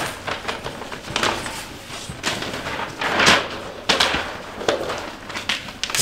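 Large paper plan sheets being flipped over and handled on an easel: a string of crinkling paper rustles, the loudest about three seconds in.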